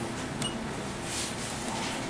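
Steady hiss of room and recording noise, with a short click and a brief high beep about half a second in.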